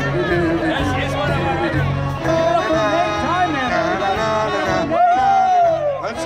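Live band playing with a male singer's voice over guests chattering, with a long held note near the end that dips in pitch.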